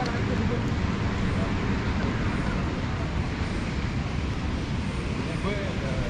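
Steady low outdoor rumble, with faint snatches of passers-by's voices about half a second in and again near the end.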